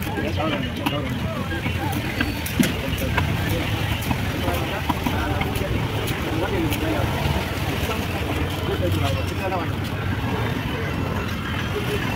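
Busy fish-market din of background voices talking over steady traffic-like noise, with scattered sharp knocks, the loudest about two and a half seconds in, from a large knife chopping through seer fish onto a wooden log block.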